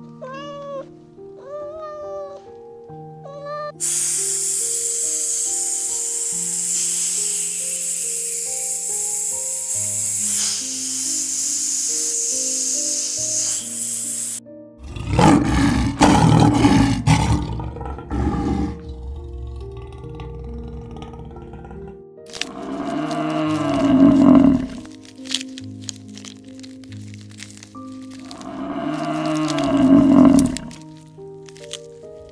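Soft piano music plays throughout. Near the start a kitten gives several short, high meows; a steady hiss follows, then a lion's loud growl or roar in the middle, and two more deep animal calls in the second half.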